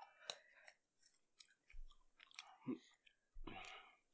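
Faint chewing of peanuts close to the microphone, with small scattered clicks.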